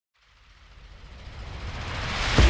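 A rumbling, hissing swell that fades in from silence and grows steadily louder: a riser effect that opens an intro music track.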